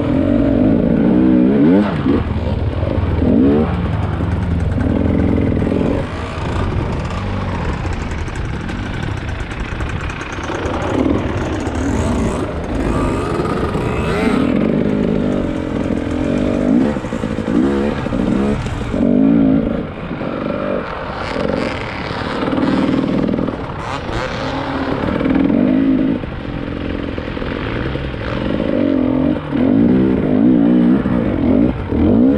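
The two-stroke engine of a KTM 300 EXC enduro motorcycle being ridden off-road. Its pitch rises and falls again and again with the throttle, with brief dips every few seconds.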